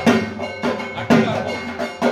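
Puja percussion: a drum struck in a steady rhythm, about two strong beats a second, with metal percussion clanging and ringing over it.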